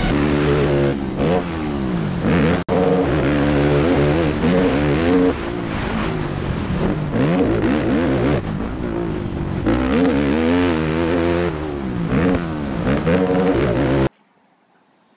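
Honda TRX450R sport quad's single-cylinder four-stroke engine under way, revving up and dropping off again and again as the throttle opens and closes. There is a brief break about two and a half seconds in.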